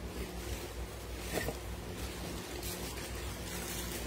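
Steady background hiss with a low hum: room tone, with a faint tap about a second and a half in.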